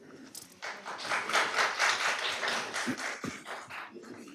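Audience applause: a few seconds of many hands clapping, starting about half a second in and thinning out near the end.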